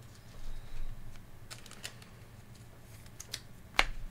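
A few light, scattered clicks and taps from hands at work on a tabletop, with the sharpest one near the end.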